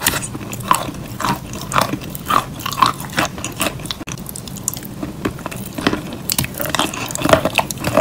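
Close-up mouth sounds of biting and chewing, with irregular crunches and crackles several times a second.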